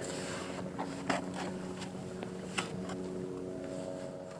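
A steady engine hum running in the background, with sharp strokes of a shovel blade cutting into wet mud, about a second in and again past halfway.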